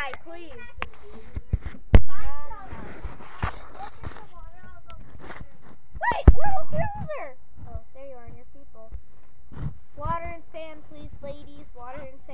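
Children's voices with indistinct talk throughout, and two sharp knocks, about two and six seconds in, that are the loudest sounds, from the handheld camera being jostled.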